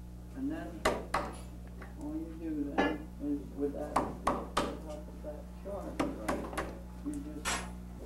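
Light, scattered taps and clicks of wood on wood as hands work at a dovetailed joint, about ten separate knocks. A few faint murmured words sit between them over a steady low electrical hum.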